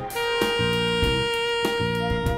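Tenor saxophone holding one long note over a jazz band's bass line and light drums, moving off the note near the end.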